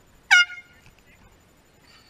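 A single short air horn blast, about a third of a second long, that rises in pitch as it starts.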